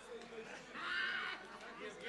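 A person's brief high-pitched, wavering vocal sound of about half a second, about a second in, over a low murmur of voices.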